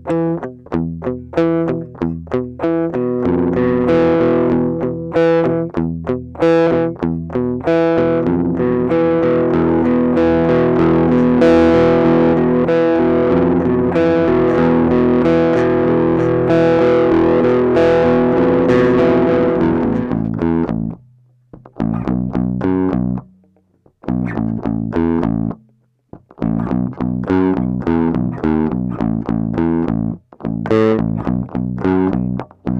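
Five-string Spector Euro 5LE bass guitar played through a GoliathFX IceDrive bass overdrive pedal, with drive at half, tone full and the blend control on, giving a distorted tone. A riff of quick notes gives way to long ringing held notes from about eight to twenty seconds in, then choppy riffing with short stops.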